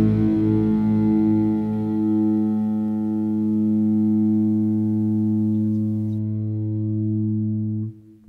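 Rock band's closing chord on a distorted electric guitar, held and ringing steadily, then cut off suddenly near the end.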